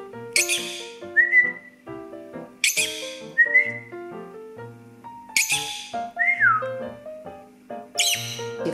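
Peach-faced lovebird giving three sharp, high-pitched calls a couple of seconds apart, each followed by a short whistled note, the last one falling. Background music runs underneath.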